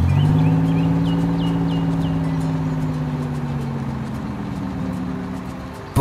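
Cartoon engine sound effect of a toy construction vehicle driving: a steady low engine hum that slowly fades away.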